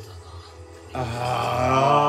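A man's voice letting out a long, low yell that starts about a second in and holds a steady pitch for nearly two seconds.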